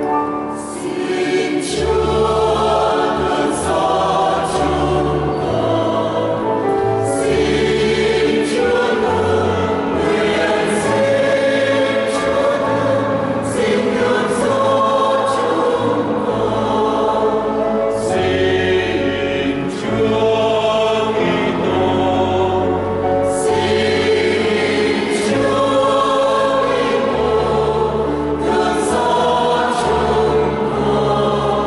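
Mixed choir of men and women singing a Vietnamese Catholic hymn in harmony, with keyboard accompaniment holding low bass notes that change every second or two beneath the voices.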